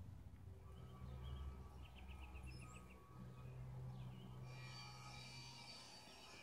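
Faint outdoor ambience with birds chirping: a quick run of repeated chirps about two seconds in, over a low steady hum. A thicker layer of high tones sets in a little past the middle.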